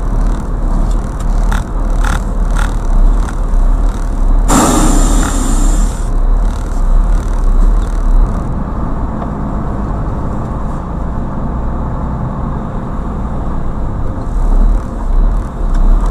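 Steady road and engine rumble heard from inside a car driving in city traffic on a wet road. About four and a half seconds in, a loud hiss lasts about a second and a half. There are a few faint clicks early on.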